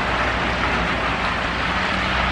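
Steady outdoor background noise: an even low rumble with a broad hiss over it, unchanging through the pause.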